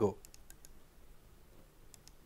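A man's voice ends a question, then a quiet pause holding a few faint, short clicks: several in quick succession in the first second and one or two more near the end.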